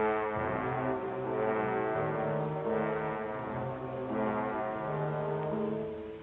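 Dramatic orchestral film score: low brass holding sustained chords that shift every second or so.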